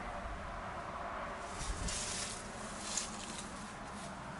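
Outdoor rustling and handling noise from a handheld camera, with low wind rumble on the microphone and two brief louder rustles about two and three seconds in.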